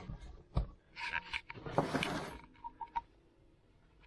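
Handling noise as a carved wooden slice is picked up and turned close to the microphone: a sharp click early on, then rubbing and scraping for about a second and a half, fading out near three seconds in.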